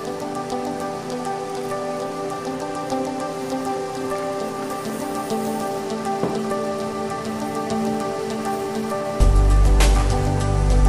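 Spiced tea water at a rolling boil in a stainless steel saucepan, a dense crackle of small bursting bubbles. Steady sustained notes of background music sound over it, with a loud low bass coming in near the end.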